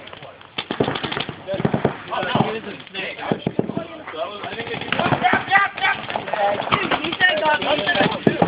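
Paintball markers firing in quick strings of sharp pops, with people's voices calling out over them.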